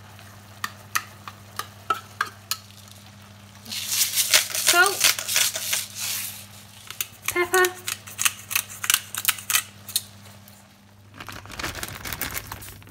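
Canned tuna is scraped from its tin with a fork into a frying pan of tomato and sweetcorn sauce and stirred in with a wooden spoon, giving sharp clicks and taps of metal and spoon against tin and pan. A spell of loud sizzling comes about four seconds in. A steady low hum runs underneath.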